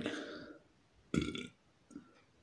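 A man belching, loudest about a second in, after a shorter throaty sound at the start. He is full from eating a dozen cups of raib, Moroccan cultured milk.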